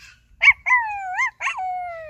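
A high-pitched voice imitating a dog: a few short rising-and-falling yips starting about half a second in, then a long falling howl near the end, an eager answer to the call to eat.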